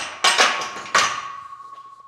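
Safety squat bar being set down on a power rack's steel J-hooks: a few loud metal clanks, the biggest about a second in, leaving one ringing tone that slowly dies away.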